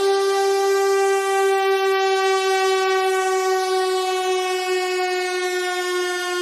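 A single long, held synthesizer note with a bright, buzzy tone full of overtones, drifting very slightly down in pitch, with no drums or bass under it: a beatless breakdown in a melodic techno mix.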